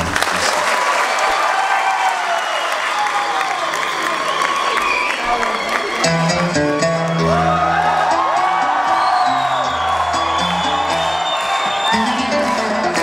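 Audience applauding and cheering, with a band starting to play under the applause about six seconds in: a plucked long-necked lute with held low notes beneath it.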